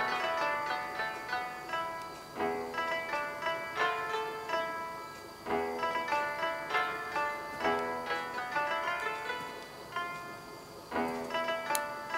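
Background music of plucked, zither-like strings: quick runs of plucked notes in phrases that start with a strong attack and fade, restarting every two to three seconds.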